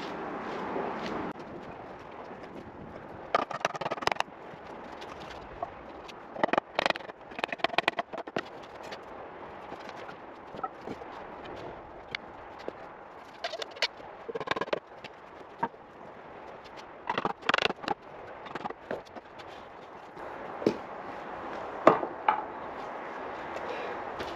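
Clusters of sharp wooden knocks at intervals, with pauses between: the parts of a green-wood shave horse being knocked together during assembly.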